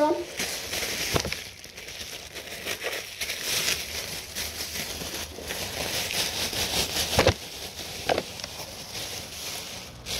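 Thin disposable plastic apron crinkling and rustling as it is unfolded, pulled over the head and tied on, with a few sharper crackles of the plastic.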